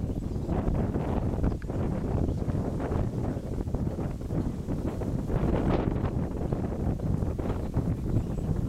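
Wind buffeting the camera microphone outdoors, an uneven low rumble with gusty rises and small knocks.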